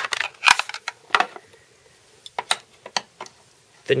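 Hard plastic clicks and taps as the Spyderco Sharpmaker's moulded base and clip-in cover are handled. About a dozen short, sharp clicks are spread unevenly, the loudest about half a second in and a quick cluster of them in the second half.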